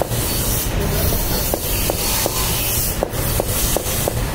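A plastic-faced mallet taps a steel fork held on a wooden block, several light taps at about two a second, under a loud, steady hissing workshop noise.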